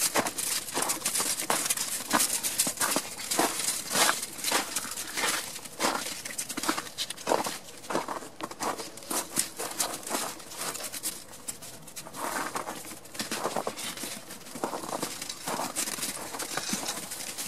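Footsteps crunching in trampled snow: a quick, irregular run of crackling steps.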